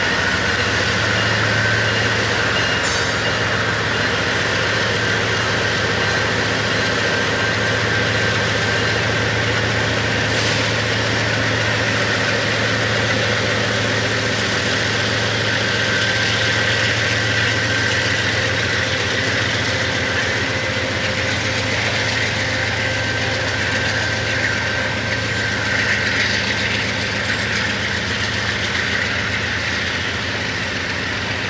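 Canadian Pacific diesel-electric locomotives rolling slowly past, their engines running with a steady low drone and a steady high-pitched whine over it.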